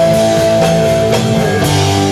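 Live rock band playing an instrumental passage: electric guitar, bass guitar and drum kit, loud and steady, with long held notes.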